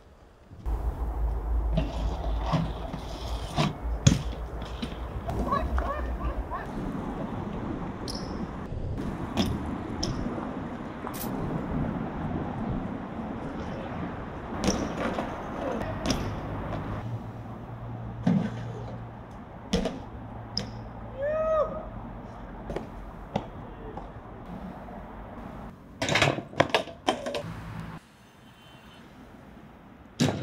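BMX bike ridden over paving and stone: tyres rolling, with sharp knocks and clanks from landings and metal contacts scattered throughout, the loudest about four seconds in and a cluster near the end, over a steady low drone.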